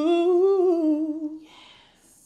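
A man singing a cappella, holding one long note that rises slightly and settles, then fades out about a second and a half in.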